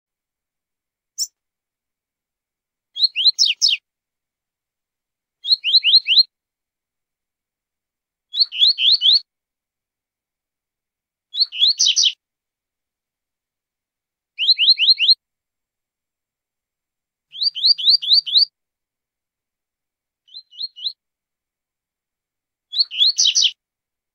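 Double-collared seedeater (coleiro) singing the 'tui-tui zel-zel' song. It gives short, high phrases of three to five quick down-slurred notes, repeated about every three seconds, with a weaker, shorter phrase near the end.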